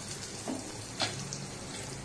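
Cumin seeds and asafoetida frying in hot oil in a kadhai: a steady sizzle, with two sharp pops about half a second apart near the middle.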